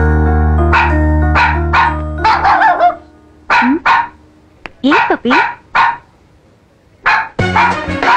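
A small white spitz-type dog barking in about a dozen short, sharp yaps, in quick runs separated by pauses. Film background music plays under the first three seconds, cuts out, and returns near the end.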